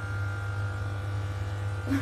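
Electric hair clippers running with a steady hum, held at the hairline just before the first pass.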